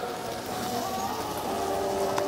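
Steady ambient noise of a crowded shopping street, with faint distant voices or tones under an even hiss.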